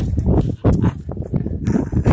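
A plush toy being bounced and shuffled on a bench right beside the microphone: irregular soft knocks and fabric rustling over a low handling rumble.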